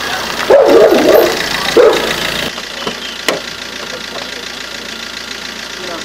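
A dog barking several times in the first two seconds, then a small car's engine idling steadily, with one sharp click about three seconds in as the car door opens.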